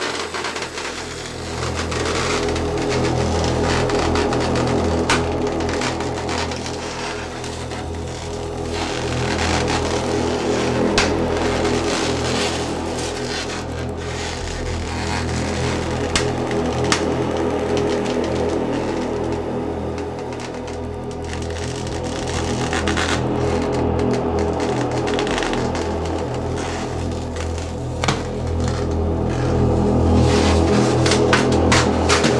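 Experimental electronic music built from field recordings and synthesizers: a sustained low synth drone with steady bass tones, overlaid with a dense crackling, clicking noise texture that slowly swells and eases.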